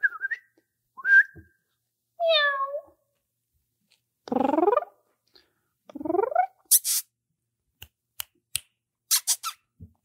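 Short whistles and squeaky, meow-like calls made to catch a puppy's attention for a photo. Near the end come a few quick, high smacking clicks.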